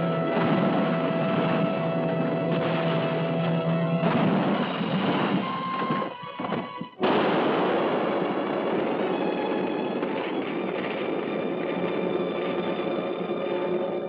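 Dramatic orchestral film-serial music plays under a car going over a cliff. About seven seconds in, after a brief dip, a sudden loud crash sets in as the car strikes the ground and blows up. It becomes a long noisy rumble mixed with the music, then fades at the end.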